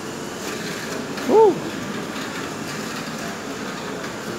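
Steady indoor shopping-mall background noise, with a short voiced "uh" about a second in.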